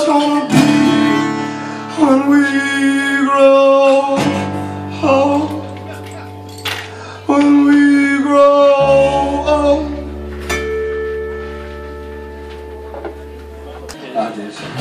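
A man singing to his own strummed acoustic guitar. The vocal stops about ten seconds in, and a last struck chord rings on and slowly fades.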